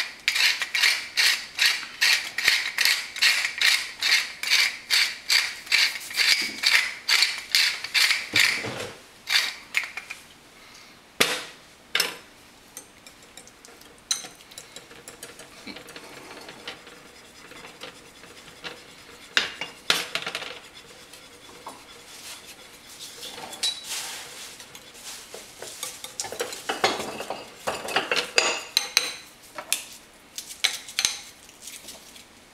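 Pepper mill being twisted to grind black pepper: a fast, even ratcheting crackle, about three strokes a second, for the first nine seconds. Then two sharp knocks, followed by quieter scraping and clinking of a spoon and then a whisk in a ceramic bowl.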